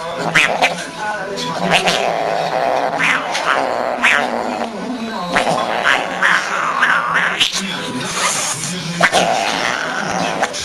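A cat growling and yowling.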